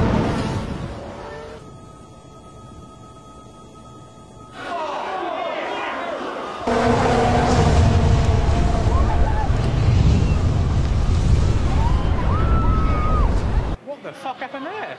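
A Formula 1 car crashing into the barrier at about 140 mph and bursting into flames: a sudden loud bang right at the start. From about halfway through, a loud, dense rushing noise as the car burns, with voices and shouts over it.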